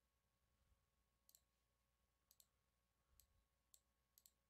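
Near silence with a few faint computer mouse clicks: a quick pair about a second in, another pair a little after two seconds, and a single click near the end.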